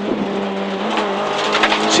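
Renault Clio Williams rally car's 2.0-litre four-cylinder engine running at speed, heard inside the cabin, holding a fairly steady note with a slight shift in pitch about a second in.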